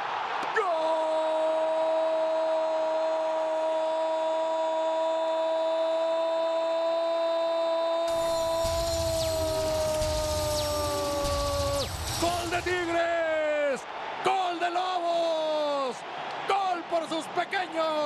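A Spanish-language TV football commentator's goal cry: one "goool" held for about eleven seconds, sinking slowly in pitch. It is followed by a string of shorter "gol" shouts that each fall away. A rush of noise, likely the stadium crowd, joins underneath from about eight to fourteen seconds.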